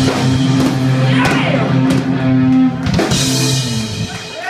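Live rock band playing the closing bars of a song: electric guitars and bass hold a sustained chord under drum and cymbal hits, and everything cuts off together just before the end.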